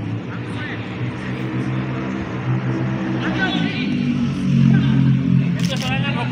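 An engine running steadily, its low hum growing louder about four seconds in, under faint voices, with a sharp click near the end.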